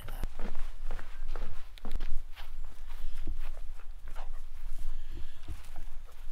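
Footsteps on a wooden pontoon: a run of irregular light knocks and scuffs.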